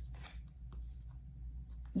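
Tarot cards being handled and slid against one another: a few short, soft papery rustles over a low steady hum.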